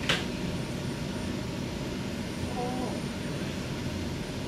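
Steady low rumble of hospital room air handling and equipment, with a sharp click right at the start and a brief faint pitched sound a little before three seconds.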